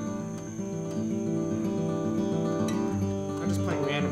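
Steel-string acoustic guitar fingerpicked, the thumb and fingers plucking individual strings in a flowing pattern of ringing, overlapping notes.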